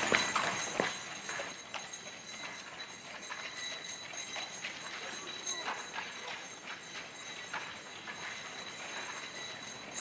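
Footsteps of hard-soled shoes on a pavement: a quick run of clear steps in the first second, then fainter, scattered steps over a quiet background with a thin steady high whine.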